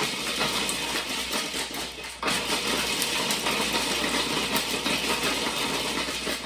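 Food processor motor running with its blade chopping blanched almonds in a small bowl insert, the hard nuts rattling around the bowl. It is pulsed: it cuts out briefly about two seconds in and then runs again.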